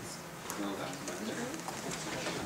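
Indistinct voices talking quietly in a room, with no clear words.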